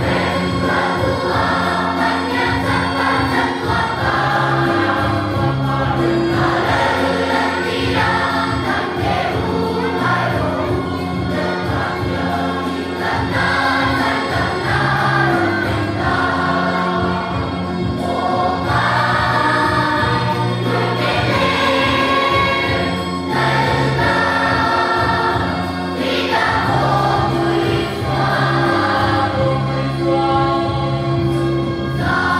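A large children's choir singing a Christmas song in unison to electronic keyboard accompaniment, with held chords under the voices.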